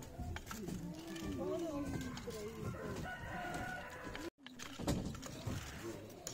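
A few sharp wooden knocks from a treadle hand loom being worked, under background voices and calls. The sound drops out for a moment just past four seconds.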